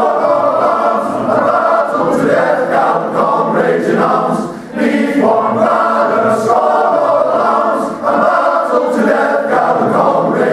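Male voice choir singing in full harmony, in long phrases with brief breaks between them about four and a half and eight seconds in.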